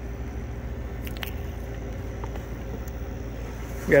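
RV generator engine running steadily, a low drone with a faint steady hum above it, and a couple of light clicks partway through.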